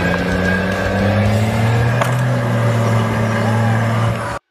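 Armoured military vehicle's engine running steadily, its pitch creeping slowly upward.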